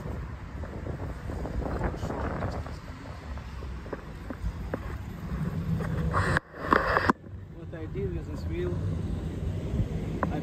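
Low, steady rumble of wind buffeting the microphone while a Kingsong 16S electric unicycle is ridden along paving, with a brief drop and burst in the sound about six to seven seconds in.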